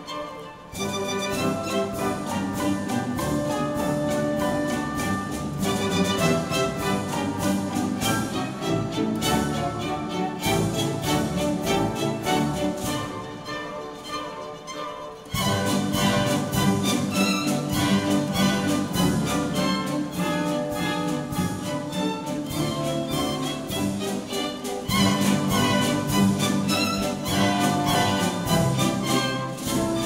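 A ball orchestra plays classical dance music, with violins carrying the melody. It softens about ten seconds in and comes back in full at about fifteen seconds.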